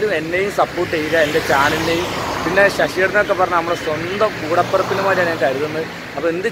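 A man talking, with a faint steady low hum of road traffic underneath.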